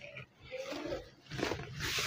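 Silk saree fabric rustling as it is flipped over and spread out by hand, growing louder in the second half.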